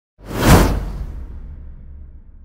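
Whoosh sound effect with a low boom: a rush of noise swells to a peak about half a second in, then thins into a low rumble that slowly fades.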